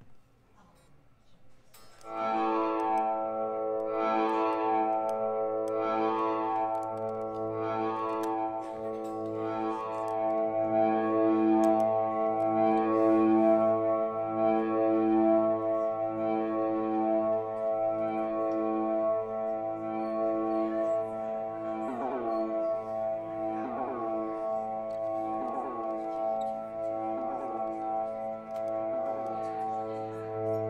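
Ambient drone from an electric guitar played through a pedalboard of effects and a Fender combo amp. A sustained chord swells in about two seconds in and holds, with a shimmer pulsing about once a second on top; in the last third, falling sweeps repeat about once a second.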